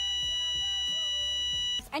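A long steady electronic beep sound effect, one unwavering tone held for almost two seconds and then cut off suddenly.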